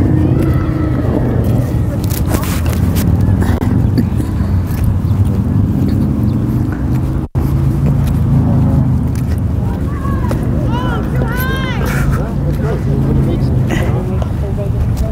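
Indistinct voices of players and spectators calling out, with a cluster of high calls near the end, over a steady low rumble. A few sharp knocks sound about two seconds in and again just before the end.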